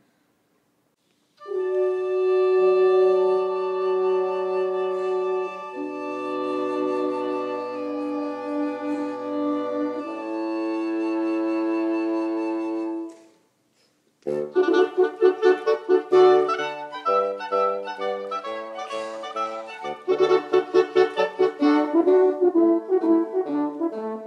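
Woodwind quintet of flute, oboe, clarinet, French horn and bassoon playing live. After a moment of silence come slow, sustained chords that change twice, then a short pause, and from about halfway a quicker passage of short, detached notes.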